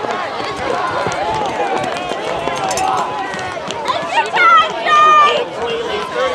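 Spectators' voices overlapping in chatter and calls, with two loud, high shouts a little after four and five seconds in.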